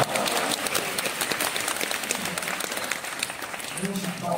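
Theatre audience applauding, many hands clapping together, slowly easing off toward the end.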